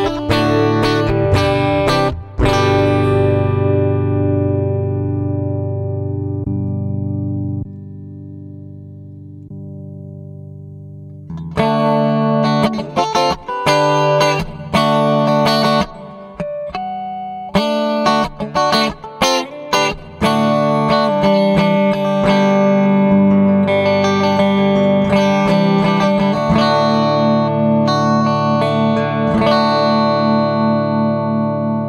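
Electric guitar played through a Hotone Ampero II amp modeler and effects processor. A few chords at the start, then one chord left to ring and slowly fade for several seconds, then more chord playing from about eleven seconds in.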